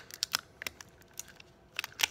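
Clear packing tape crackling in short, scattered clicks as fingers press and smooth it down onto a small robot chassis.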